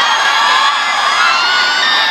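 A very large crowd cheering and shouting, with many high voices overlapping in rising and falling cries.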